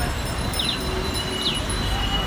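Bicycle bells ringing again and again among a large pack of cyclists, short bright dings over a steady low rumble.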